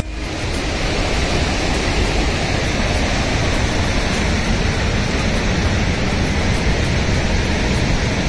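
Fast mountain river rushing over rocks: a steady, loud roar of whitewater.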